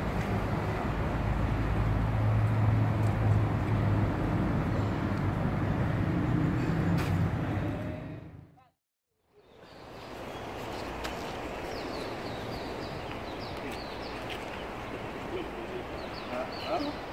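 Outdoor street ambience with a steady low rumble like nearby traffic. The sound drops out to silence for about a second just past the middle. Quieter street noise with faint high chirps near the end follows.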